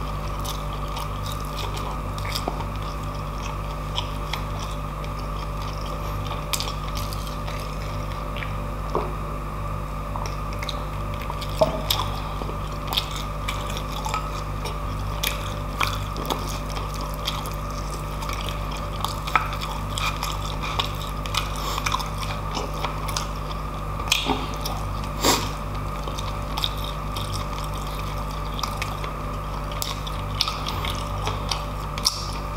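Close-miked chewing of roast pork belly and roast beef, with scattered short crunches and wet clicks, a few louder than the rest, over a steady low hum.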